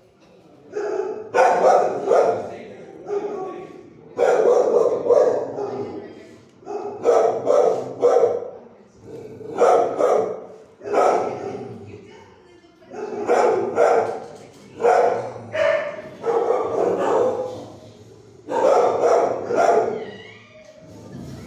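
Dogs barking in a shelter kennel block, in repeated bursts of about a second each, on and off throughout.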